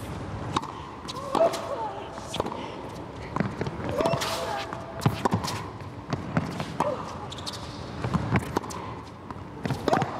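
Tennis rally in an indoor arena: a serve, then racket strikes and ball bounces on the court, sharp knocks about once a second with some echo.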